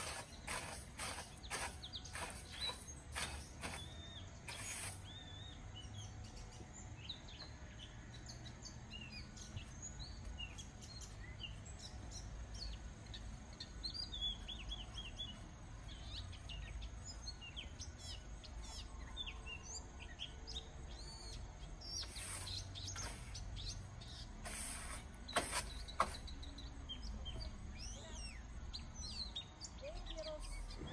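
Small birds chirping and twittering throughout over a low outdoor rumble, with a quick run of scrapes or knocks in the first few seconds and two sharp clicks near the end.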